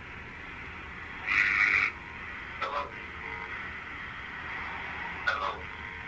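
Phone speaker on a bad connection: a steady line hiss broken by short garbled bursts from the line, the loudest about a second in.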